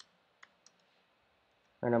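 Computer keyboard keystrokes: three short, sharp clicks in the first second, from typing code.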